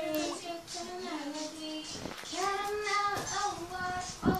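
A child's voice singing in a few drawn-out notes with short breaks between them.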